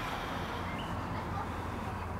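Quiet outdoor background: a steady low rumble, with a faint short chirp about two-thirds of a second in.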